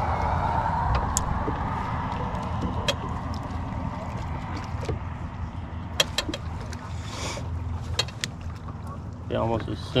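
Water lapping against a small fishing boat's hull over a steady low rumble, with a handful of sharp clicks and taps scattered through. A faint tone sinks slowly in pitch in the first few seconds, and a man's voice starts near the end.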